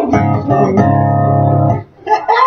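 Organ-like electronic keyboard sound holding two steady chords, the second starting about three-quarters of a second in, then cutting off sharply near the end.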